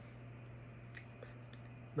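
A few faint clicks and handling sounds from a smartphone being picked up and held up, over a steady low hum.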